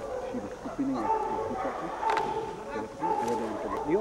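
A person's voice with long held, pitched notes, like singing.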